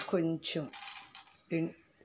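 A pinch of small spice seeds dropped into a pan of green chillies and chana dal frying in oil, giving a short, high rattling patter about half a second long near the middle. Brief bits of speech come at the start and again about a second and a half in.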